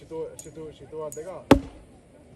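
A single axe blow chopping into a log, a sharp crack about one and a half seconds in.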